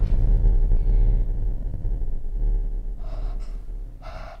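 A deep, low rumble with a steady hum above it, slowly fading, with two short breathy gasps about three seconds in and at the very end.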